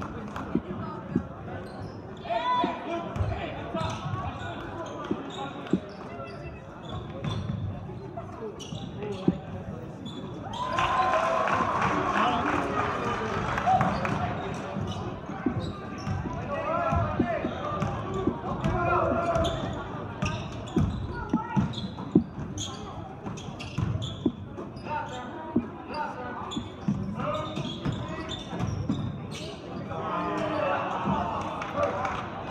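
Basketball bouncing on a hardwood gym floor during live play, with sharp short knocks throughout over a steady murmur of crowd and player voices. The voices swell for a few seconds about eleven seconds in.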